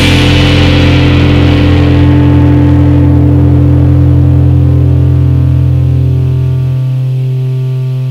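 One distorted electric guitar chord left to ring out, slowly fading, with its lowest note dropping out near the end.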